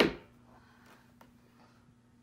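A single thump as a bare foot steps onto a Withings smart scale, followed by quiet with a faint steady hum and a couple of light ticks.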